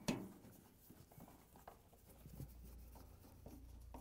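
Faint scraping and light scattered clicks of a hand screwdriver turning Phillips screws into a refrigerator's sheet-metal rear access panel.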